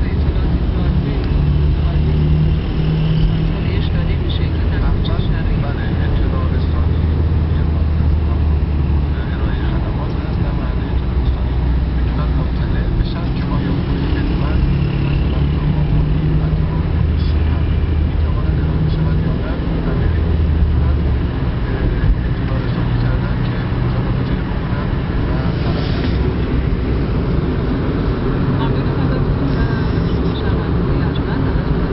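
Steady low engine and road rumble heard from inside a car's cabin while driving at highway speed in traffic.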